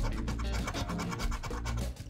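A coin scratching the coating off a scratch-off lottery ticket in quick, repeated strokes, with background music underneath.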